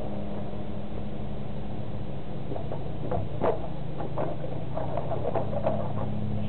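Motorcycle engine idling with a steady low hum. From about halfway, a few short, irregular sounds like muffled voices come over it.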